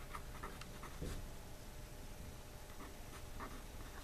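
Pen writing by hand on paper: a run of faint, short strokes as a word is written.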